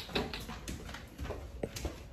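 Footsteps walking on a hard floor: a run of irregular light knocks over a low rumble.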